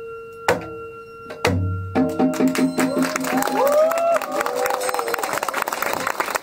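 Two strokes on a janggu hourglass drum, the second with a low boom, over a steady metallic ringing that lingers from the end of the song. From about two seconds in, the audience applauds with shouted calls.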